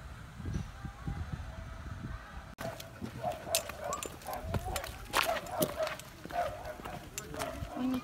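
Wind rumbling on the microphone, then, after a cut, footsteps of a person and a leashed dog on a gravel path: a run of sharp clicks and scuffs, with people's voices in the background.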